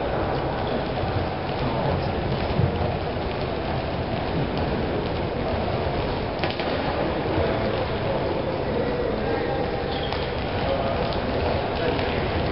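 Steady rushing noise filling a large sports hall, with faint, indistinct voices in it.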